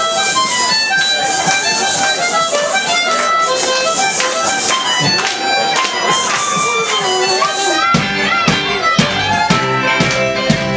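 Harmonica played into a handheld microphone for amplification, a bluesy melody of held notes with a long bent note. About eight seconds in, the band comes in underneath with a steady rhythm.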